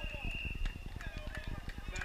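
Distant voices of players calling out across an open football field, with a thin steady high tone in the first half-second.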